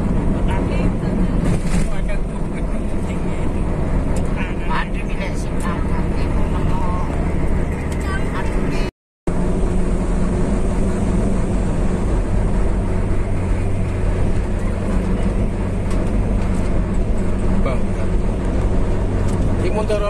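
Steady engine drone and road rumble heard from inside a vehicle's cabin while driving at highway speed. The sound cuts out completely for a moment about nine seconds in.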